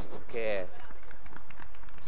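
A man says a brief "okay" into a handheld microphone, followed by a steady low background hum with no other distinct sound.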